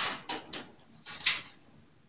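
Metal items handled on a stainless steel instrument trolley: about four quick clinks and clatters, the loudest a little over a second in.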